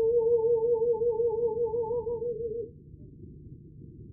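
Live opera music: a single high note held with a wide vibrato for about two and a half seconds over soft orchestral accompaniment, after which only the quiet accompaniment continues.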